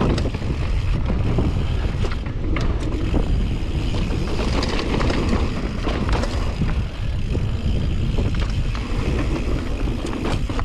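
Wind buffeting the camera microphone and mountain bike tyres rolling over a dusty dirt trail at speed, with frequent short rattles and knocks from the bike over bumps.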